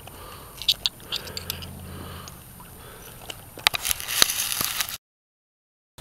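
Creek stones and gravel clicking and scraping under a hand in shallow water: a few sharp clicks about a second in, then a quicker run of clicks with rushing noise near the end. The sound cuts out completely about a second before the end.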